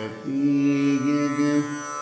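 Male Carnatic vocalist holding one long, steady note over the continuous drone of tanpuras, after a brief dip at the start.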